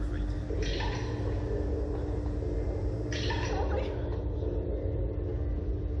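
Steady low rumble with a constant hum from the Slingshot ride's machinery while the capsule waits to launch, broken twice by short, brighter bursts of noise.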